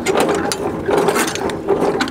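Semi-trailer landing gear being hand-cranked, its gearbox ticking and grinding in a rapid, continuous run of clicks. It is being worked as a function check and runs properly.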